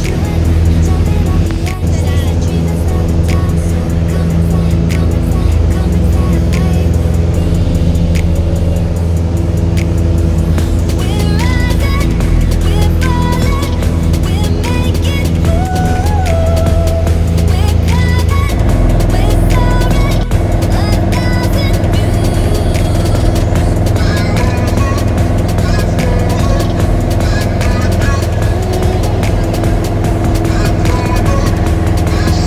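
Light single-engine propeller aircraft's engine running steadily at takeoff power through the takeoff roll and climb, with background music over it.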